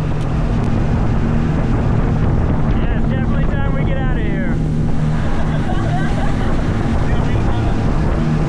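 Motorboat with twin Suzuki outboard motors running at speed: a steady engine drone under the rush of wind on the microphone and splashing water.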